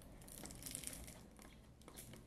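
Faint scratching and crinkling as a knife point slits the plastic shrink wrap sealing a cardboard perfume box.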